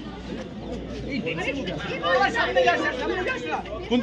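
Several people talking over one another at once: a babble of overlapping voices.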